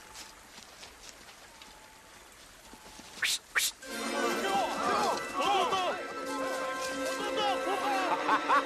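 Film soundtrack: a few seconds of quiet outdoor ambience, then two short, sharp whooshing bursts about three seconds in. After that an orchestral score comes in, with held notes and quick swooping figures.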